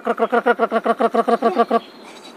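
A fast, even run of short voice-like pitched notes, about ten a second, stopping shortly before two seconds in.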